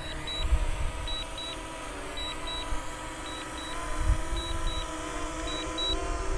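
DJI Mini 2 drone's propellers whining steadily overhead as it slowly descends on return-to-home, with a slight rise in pitch and level later on as it comes nearer. Over it, a short high beep recurs in pairs about once a second: the remote controller's return-to-home alert.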